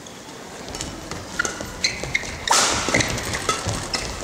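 Badminton doubles rally: sharp racket strikes on the shuttlecock and short shoe squeaks on the court floor, with crowd noise swelling about halfway through.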